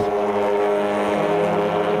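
Touring car engines running at high revs, a steady drone whose pitch steps down slightly just past halfway.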